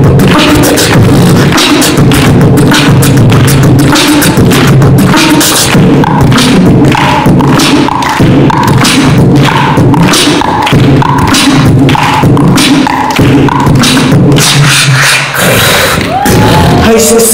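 Beatboxing into a handheld microphone: a fast, steady rhythm of vocal bass-drum, hi-hat and snare sounds. From about six seconds in, a short higher note repeats about twice a second over the beat.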